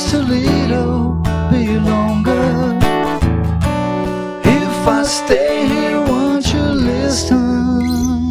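Acoustic guitar strummed as accompaniment to a man singing, with a second male voice joining in harmony.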